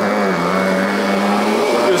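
Kirby Avalir G10D upright vacuum cleaner running with a steady motor drone at one pitch. The nozzle is lowered for deeper cleaning, so the turning brush roll grabs the carpet a little.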